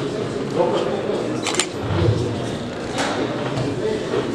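Indistinct voices and background chatter in a large hall, with two sharp clicks, one about a second and a half in and one near three seconds.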